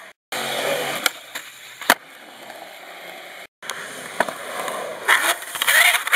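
Skateboard wheels rolling on rough concrete, broken by a few sharp clacks of the board. A louder scraping, clattering stretch comes near the end. The sound cuts out abruptly twice.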